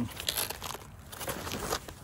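HRT HRAC nylon plate carrier being handled, its fabric rustling and crinkling with a few short scrapes.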